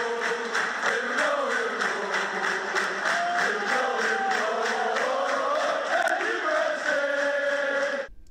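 Intro music built on a crowd chant: many voices singing together in unison over a steady beat. It cuts off abruptly at the end.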